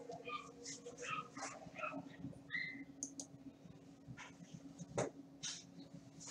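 Faint scattered clicks and short high blips over a low steady hum, with one sharper click about five seconds in.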